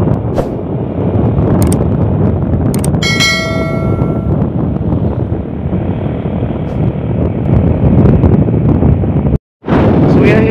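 Wind buffeting the microphone over a motorcycle engine running while riding along a road. About three seconds in, a click and then a bell-like ding rings for about a second: a subscribe-button sound effect. The sound cuts out for a moment near the end.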